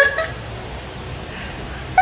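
A short, high-pitched burst of laughter at the start, then much quieter laughter for the rest.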